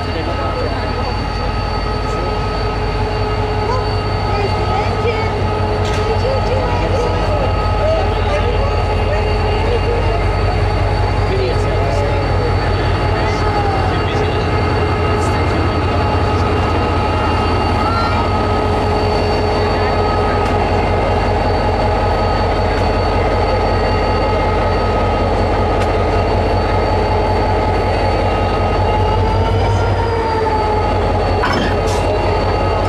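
Irish Rail class 071 diesel-electric locomotive, an EMD two-stroke V12, running slowly past at close range: a deep, steady engine rumble with a constant high whine on top, the whine rising slightly near the end.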